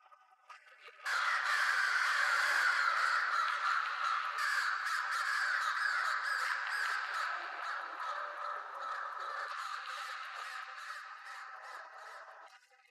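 A dense chorus of harsh bird-like cries, many calls overlapping, starting suddenly about a second in and thinning out near the end.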